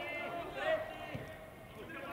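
Faint shouts of footballers on the pitch, heard clearly because the stands are empty and there is no crowd noise, with one soft thud about a second in.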